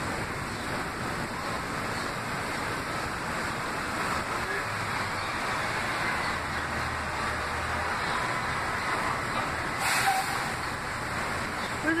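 Steady rushing outdoor background noise, with one short sharp noise about ten seconds in.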